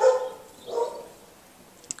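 A man coughing twice into his hand: a sharp loud cough, then a softer one about a second later.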